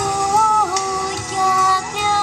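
A woman singing a held, gliding melody into a handheld microphone over amplified backing music with a light regular beat.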